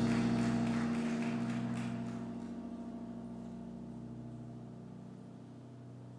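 A keyboard's final held chord at the end of a song, ringing on and slowly fading away.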